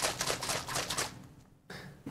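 Small plastic bottle of water and cooking oil being shaken hard, the liquid sloshing and the bottle rattling in quick repeated strokes, stopping about a second in; the shaking blends the oil and water into a milky mixture.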